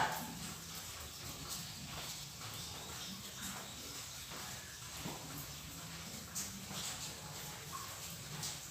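Quiet room tone: a faint steady low hum with a few soft, scattered taps.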